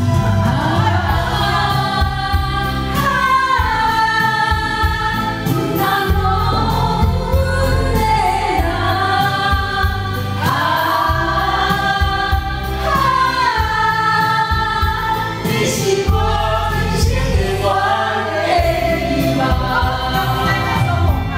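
A group singing together into karaoke microphones over a karaoke backing track, in unison, with long held notes that slide down at the ends of phrases.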